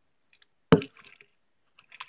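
A single sharp knock a little before the middle, then a few faint clicks and light scrapes, as something hard taps against the crab's glass tank.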